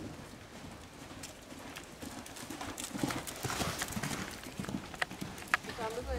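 Hoofbeats of a horse moving on sand arena footing: irregular knocks and thuds, louder from about halfway through.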